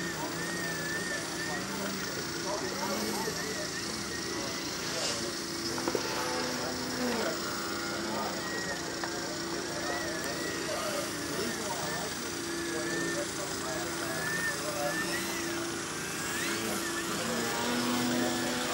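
Electric motor and 16x8 propeller of a 60-inch Extreme Flight Edge 540T RC aerobatic plane, a thin whine that keeps rising and falling in pitch as the throttle is worked through 3D manoeuvres. People can be heard talking in the background.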